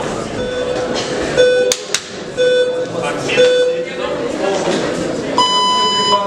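Electronic bout timer beeping: four short, lower beeps about a second apart, then one longer, higher beep near the end, the countdown that signals the next round is about to start. Two sharp clicks come between the second and third beeps, over the murmur of a talking crowd.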